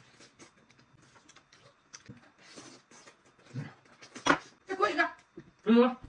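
Eating sounds: a person chewing and smacking on braised pork knuckle, with soft wet mouth noises and a sharp click about four seconds in. Short hummed voice sounds come near the end.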